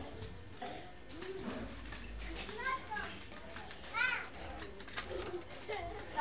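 Small children's voices while they play, short high calls and squeals, the loudest about four seconds in.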